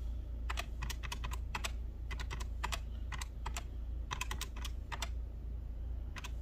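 Plastic keys of a desktop calculator being pressed in quick irregular runs of clicks, a few a second, as a column of figures is keyed in and added up. A low steady hum lies underneath.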